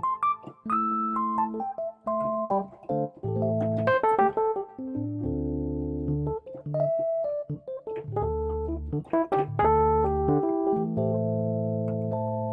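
Software Rhodes electric piano (MainStage's Rhodes Stage patch) played dry, with its EQ, amp, chorus and other effects switched off. It plays a series of chords over bass notes, with a couple of quick flurries of notes.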